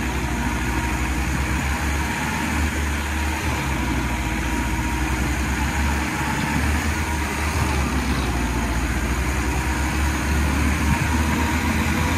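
Two diesel farm tractors, a Massey Ferguson 385 and a Russian-built tractor, running hard under full load as they pull against each other in a tug-of-war. It is a steady, heavy engine drone that wavers as the rear tyres dig in and spin.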